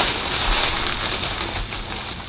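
Paper food wrapper crinkling as a hand rummages in it: a continuous crackly rustle that eases off toward the end.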